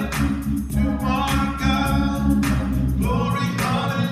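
Gospel praise singing, voices holding and bending long notes, with a deep bass underneath that drops out about three seconds in.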